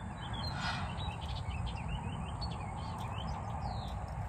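Several wild birds chirping, with many short, quick calls throughout, over a steady low background rumble.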